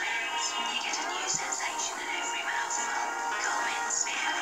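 Music with a singing voice from a television commercial, played back through a monitor's speaker.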